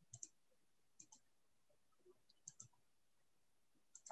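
Faint computer mouse clicks over near silence: three quick double clicks about a second apart.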